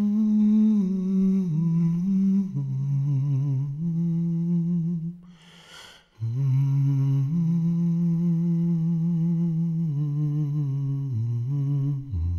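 A man's voice humming a slow, wordless melody with a light vibrato. It holds long notes that step down and back up in pitch, and breaks off once about halfway through before carrying on.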